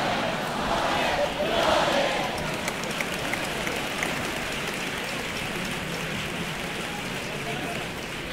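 Theatre audience applauding and cheering, the shouts loudest in the first two seconds, then settling into steady applause that slowly fades.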